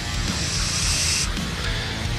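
A hiss of air blown through a thin spray-nozzle straw into a guitar neck's truss rod hole. It forces oil down onto a rusted truss rod, and it cuts off a little over a second in.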